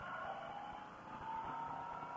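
Faint motorcycle riding noise heard through a helmet intercom's narrow, phone-like channel: a low hiss with a faint whine that rises slightly in pitch.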